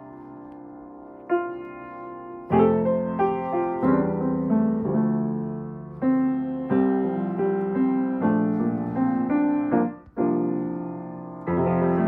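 Freshly refurbished 1979 Steinway Model M grand piano being played: chords and melody, starting quietly and opening up with a loud chord about two and a half seconds in. A brief break comes about ten seconds in before the playing resumes with another full chord.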